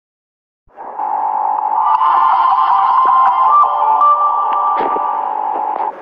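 Audio of a TV teleshopping ident: a loud, steady, buzzy band of tones with a few higher notes over it. It starts just under a second in and cuts off sharply at the end.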